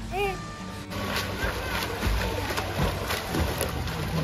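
Water splashing and sloshing as a person swims front strokes across a pool, starting about a second in, irregular and continuous. A short voice is heard at the start, with music underneath.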